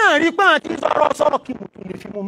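A man's voice preaching into a handheld microphone in short phrases.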